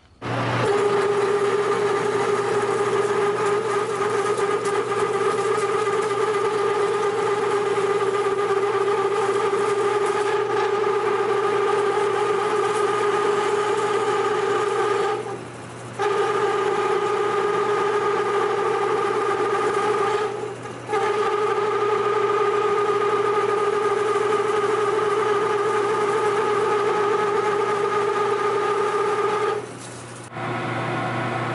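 Metal lathe running while a two-inch drill bit bores into a solid aluminium bar: a steady pitched machine hum with cutting noise. The sound breaks off twice for under a second, about halfway through and again a few seconds later.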